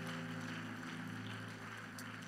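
Soft background music: a sustained chord held steady on a keyboard.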